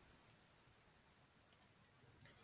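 Near silence: room tone, with a faint computer-mouse double click about one and a half seconds in.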